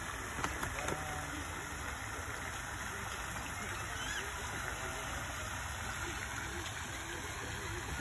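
Steady rushing outdoor noise with faint voices in the distance.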